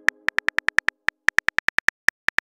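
Keyboard typing sound effect from a chat-story app: a fast, even run of short, high-pitched ticks, about eight a second, one per letter typed, with a brief pause about a second in.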